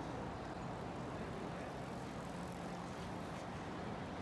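Steady outdoor street ambience: an even hum of distant traffic with a faint low drone running through it.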